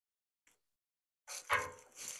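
Brief handling noise at the offset smoker: a scrape and a knock starting about a second and a quarter in, with a fainter scrape near the end.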